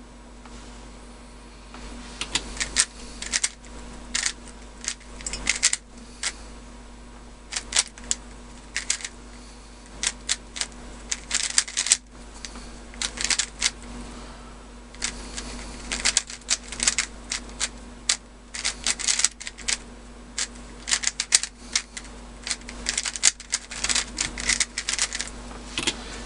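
YJ ChiLong 3x3 speedcube turned fast in a timed solve: bursts of rapid plastic clicking and clacking as the layers turn, with short pauses between bursts, starting about two seconds in. The cube is freshly lubricated and tensioned.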